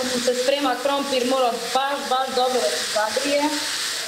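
Butter sizzling as it melts in a hot frying pan while a metal spoon pushes it around, with a voice talking over it.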